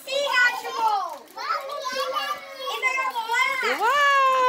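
Children's excited, high-pitched voices and exclamations, overlapping, with a sharply rising squeal near the end.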